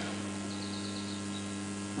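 Steady electrical mains hum from a public-address sound system: one low buzzing tone with its overtones, unchanging throughout.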